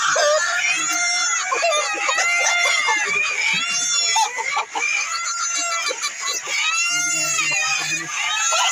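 A large flock of chickens calling over one another: dense overlapping clucks and cries, with several louder arching calls standing out about a second in, about halfway through and near the end.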